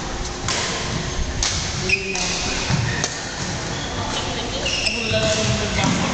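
A badminton game on an indoor court: footsteps and short shoe squeaks on the court, with a sharp hit about two seconds in. Voices talk in the background throughout.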